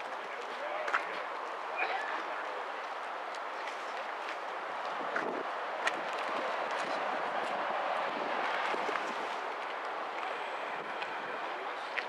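Steady outdoor background noise with indistinct voices, and a few light clicks.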